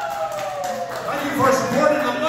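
A man talking into a stage microphone.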